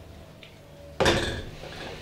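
A single clunk of plastic tubs knocking together about a second in, dying away quickly.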